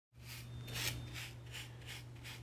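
Electric hair clippers buzzing with a steady low hum, rasping through hair against the side of the head in quick repeated strokes, about three a second.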